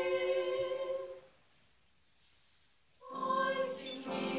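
Girls' vocal ensemble singing in harmony, holding a chord that is released about a second in; after a short pause of near silence the voices come back in together near the end.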